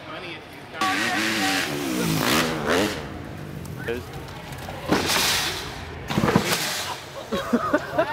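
Dirt bike engine revving up and down, followed by several sharp thumps; a person laughs near the end.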